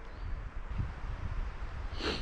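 Wind rumbling on the microphone, low and uneven, with faint rustling.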